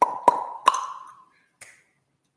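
Three sharp clicks in quick succession, each with a short ringing tail, and a fainter fourth click near the end.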